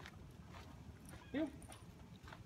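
Footsteps on sandy dirt as a man walks a leashed puppy, with one short spoken command, likely another "heel", about a second and a half in.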